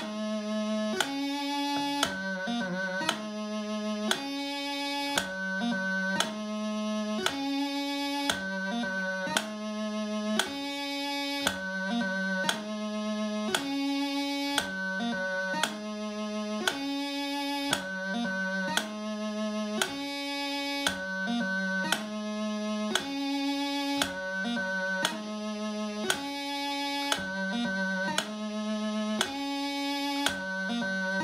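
Bagpipe practice chanter playing a D taorluath on A exercise: the same short phrase of held notes broken by quick gracenote embellishments, repeated about every two seconds.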